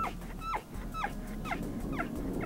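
Tule elk bull bugling during the rut: a run of short, high squealing notes, each sliding down in pitch, about two a second.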